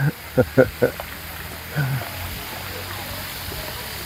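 Short bursts of a person's voice in the first second and again about two seconds in, over a steady low hum and an even hiss.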